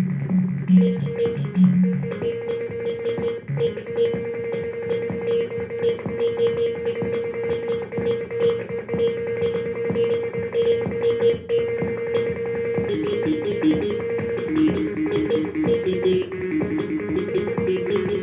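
Electronic instrumental music. A single note is held steadily from about two seconds in until about thirteen seconds, after which the melody moves in short stepping notes over a busy accompaniment.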